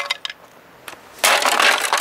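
Plastic housing of an exercise bike being pried open by hand: a few light clicks, then a loud, rough scraping burst of plastic lasting most of a second, starting just over a second in.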